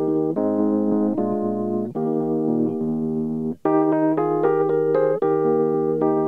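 Keyboard music of slow, held chords that change every second or so, with a short break about three and a half seconds in.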